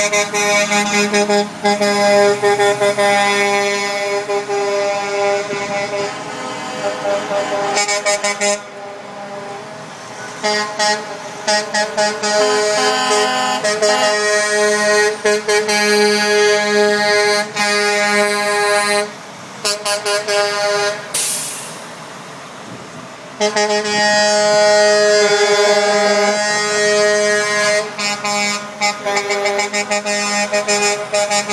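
Big-rig air horns blowing long, steady blasts, one after another, with brief breaks and a quieter gap a little after the middle, over the engines of semi trucks driving past.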